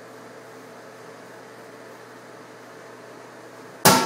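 Steady hiss with a faint hum. Near the end, music starts suddenly with a loud plucked chord that rings on.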